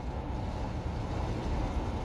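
Steady road and wind noise inside a 2021 Toyota Sienna hybrid minivan's cabin at highway speed, a low, even rush with no distinct engine note. Part of the wind noise comes from a dealer key box hung on the window, as the driver believes.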